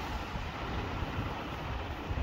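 A steady low rumbling noise, unchanged throughout.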